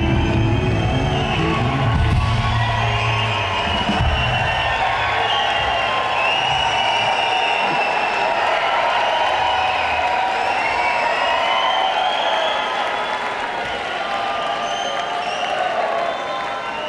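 A live rock band's final notes ring out and fade away over the first few seconds. A concert crowd cheers and whoops over them and keeps cheering after the band stops.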